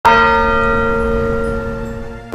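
A bell struck once, its tone ringing on and slowly fading.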